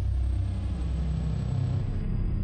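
A low, steady rumbling bass drone from an intro logo sound effect, with a faint thin high tone above it.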